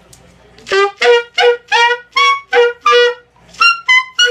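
Saxophone playing a quick run of short, separate overtone notes, starting under a second in, about two to three notes a second. The upper partials step from note to note over a steady low pitch, with a brief break near the end.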